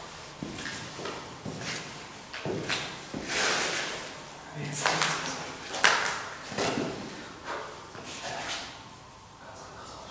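Hushed, indistinct voices mixed with irregular short scraping and shuffling noises of people moving about.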